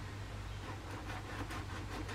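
Electric pop-up toaster running: a faint steady hum with hiss.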